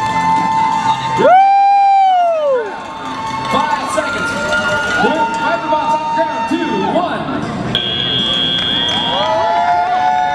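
Spectators cheering, shouting and whooping as a robotics match ends, with a loud held note about a second in that swoops up, holds and then falls away.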